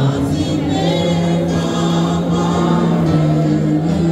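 A choir singing a gospel hymn, the voices holding long sustained notes.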